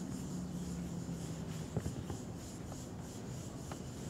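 Soft rubbing and scratching with a few light clicks scattered through it, over a faint low hum that fades out partway through.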